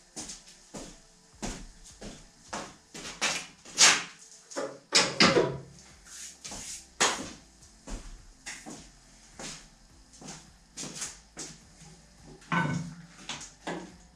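Irregular knocks and clatters of tools being handled: a drill stand is put away and a corded drill-mixer picked up, with footsteps across a small workshop. The loudest knocks fall around four to seven seconds in.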